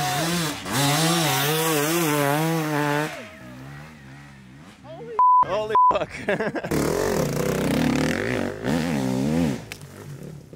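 Enduro dirt bike engine revving hard under load on a steep climb, its pitch wavering up and down with the throttle, then dropping away about three seconds in. About five seconds in come two short, high beeps with the rest of the sound cut out around them. After that the engine is heard revving again.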